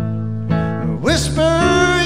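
A country band playing live, with a louder lead line that slides up into a held, wavering note about a second in.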